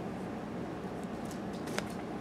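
Quiet handling of a deck of Lenormand cards: a few faint clicks as a card is slid off and turned, with one sharper tick near the end, over a steady low background noise.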